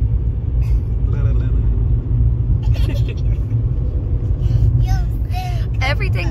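Steady low rumble of a car's engine and road noise heard from inside the cabin while driving, with a few faint snatches of voice over it.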